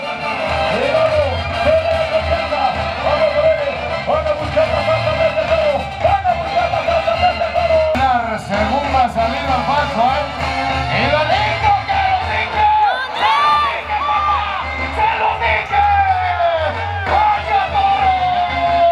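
Live band music over the arena's loudspeakers: a wavering melody line carried over a steady low bass line.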